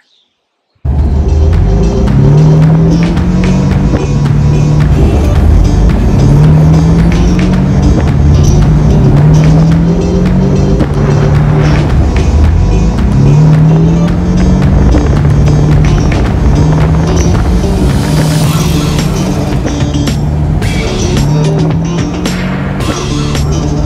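Background music with a steady beat and a repeating bass line, starting about a second in.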